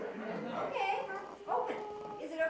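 A dog whining, two calls that slide in pitch, with people's voices around it.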